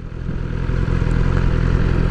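BMW S1000R's inline-four engine running with the bike standing in neutral. The sound swells over the first half second, then holds steady.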